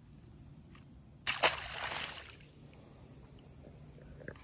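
A largemouth bass held by the lip at the water's surface makes one sudden splash a little over a second in, which trails off over about a second.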